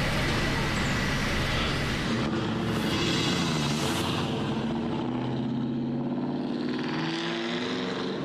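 Heavy work-vehicle engines running steadily, with an engine note that rises slightly in pitch in the second half.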